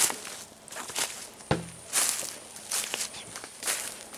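Footsteps on dry leaf litter and twigs on a forest floor, at a steady walking pace.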